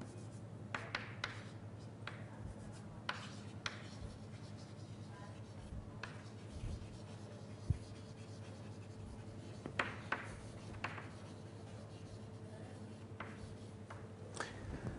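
Writing on a lecture-hall board: faint, irregular taps and short scratchy strokes, over a low steady room hum.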